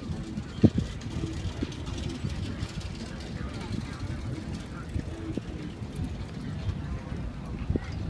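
Low, steady rumble of riding a bicycle over hard-packed desert dust, with the bike rattling and knocking now and then; the loudest is one sharp knock near the start.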